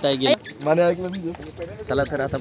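Speech only: people talking close to the microphone.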